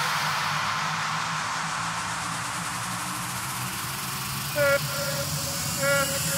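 Breakdown in an electro house mix: the kick drum and bass drop out, leaving a hissing noise wash over a faint low pad. Short pitched synth or vocal-chop notes come in twice, at about four and a half seconds and near the end.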